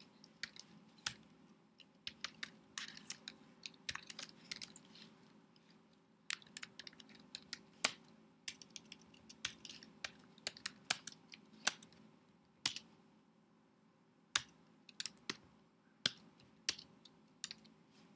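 Computer keyboard being typed on: irregular runs of short key clicks, with a pause of about a second and a half in the second half, over a faint steady hum.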